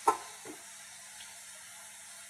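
Living wall's watering system running: a faint, steady hiss of flowing water.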